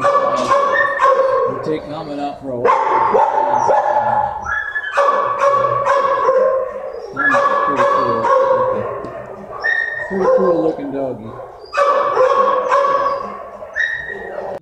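Several dogs barking in a shelter kennel block, the sound echoing off hard walls. The barking comes in loud, overlapping waves a second or two long, one after another.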